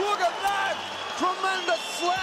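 Short, excited exclamations from a male sports commentator reacting to a big slam, in two brief bursts.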